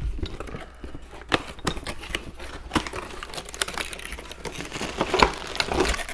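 Unpacking a cardboard box: flaps pulled open and plastic-bagged parts handled and lifted out, a continuous run of irregular clicks and scrapes.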